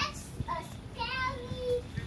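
Children's voices calling out, high-pitched, with one long drawn-out call about a second in and a dull thump shortly before it.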